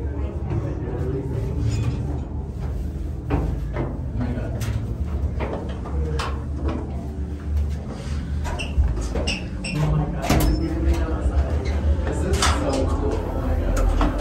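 Indistinct voices with scattered knocks and clatter throughout, over a steady low rumble.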